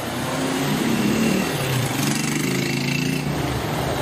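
A car engine passing close by in street traffic, its pitch shifting slightly as it goes.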